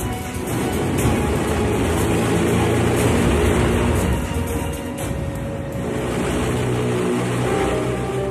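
Documentary background music over a steady low engine drone: the Hindenburg's diesel propeller engines running after start-up. The sound swells about a second in.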